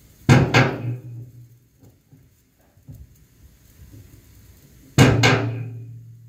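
A drum struck with a stick in two loud double hits about five seconds apart. Each hit rings out and fades over about a second over a low hum.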